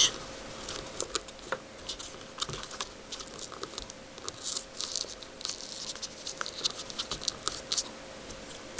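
Patterned paper rustling and crinkling as a glued flap is curled back and pressed under by hand, with many small irregular scratchy clicks.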